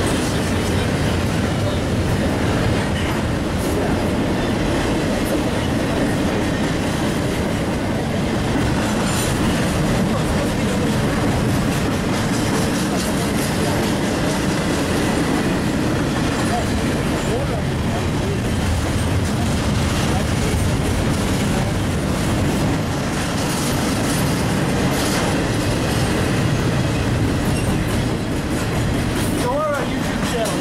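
A CSX double-stack intermodal freight train passing close by: a loud, steady noise of steel wheels running over the rails as the loaded container cars roll past.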